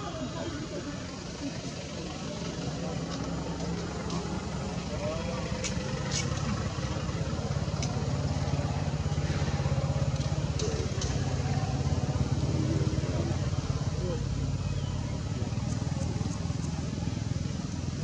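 Low, steady rumble of a motor running nearby, growing louder toward the middle and easing slightly near the end, with a few faint clicks.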